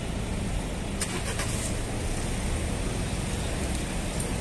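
Street ambience dominated by a steady low rumble of road traffic, with a short run of sharp clicks about a second in.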